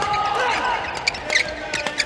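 Badminton doubles rally: the shuttlecock struck by rackets several times in quick succession, with court shoes squeaking on the hall floor as the players lunge and change direction.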